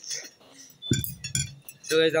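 Short clinks of plates and cutlery on a table, with a low thump about a second in.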